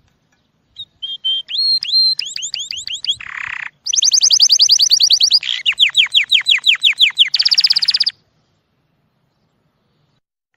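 Male domestic canary singing an excited courtship song: a string of fast trills of repeated notes, many sweeping down in pitch, with a short buzzy rattle in the middle. The song begins about a second in and stops abruptly a couple of seconds before the end.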